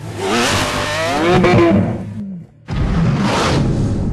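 Lamborghini Aventador LP 700-4 Roadster's V12 engine revving, its pitch rising and then falling. It breaks off about two seconds in, and after a short gap a second loud, rougher rush of engine noise follows.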